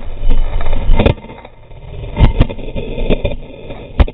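Rumbling and rubbing of a helmet camera's housing pressed and shifting against dirt, with heavy knocks about a second in and twice just after two seconds.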